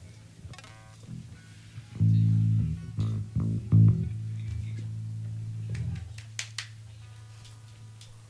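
Electric bass guitar plucked a few times through an amp, the last note ringing on for about two seconds before fading to a steady low hum. A couple of sharp clicks come a little later.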